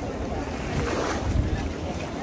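Beach ambience: wind buffeting the microphone and small waves washing on the shore, swelling briefly about halfway through, with the faint voices of beachgoers.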